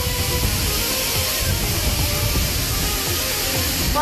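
Fire hose water spraying onto a target box: a steady hiss, heard over background music with a beat.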